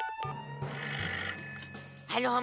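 Telephone ringing once, a ring of about a second, right after a final keypad tone from a phone being dialled; soft background music underneath.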